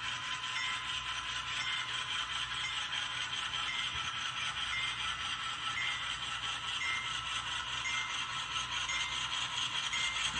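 HO-scale Thrall 3654 gondolas rolling along model track: a steady rattle of the wheels and trucks on the rails, with a light click recurring a little more often than once a second.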